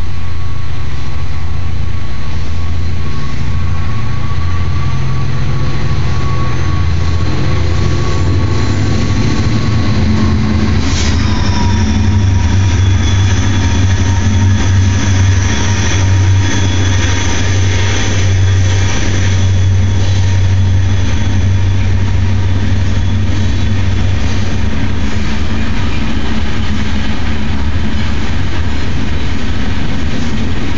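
Freight train rolling past: a loud, steady heavy rumble from the train and its cars. About eleven seconds in, a high steady squeal of wheels on the rails sets in and fades out after the middle.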